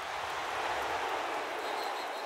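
Steady stadium crowd noise from a football game broadcast, an even wash of many voices with no single sound standing out.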